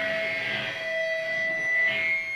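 Amplifier feedback from the band's rig: a steady high ringing tone, joined by a lower ringing tone that fades out near the end, over faint guitar.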